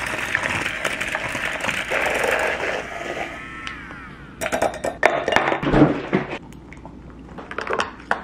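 Water poured into a tall glass over matcha, splashing steadily, the pitch rising as the glass fills, then stopping about three and a half seconds in. A quick run of metal clinks against the glass follows.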